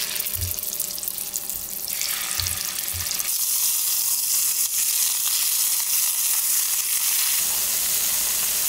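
Scallops searing in hot oil in a stainless steel skillet: a steady sizzle that grows louder and fuller about three seconds in. A few soft thuds come in the first three seconds as the scallops are laid into the pan.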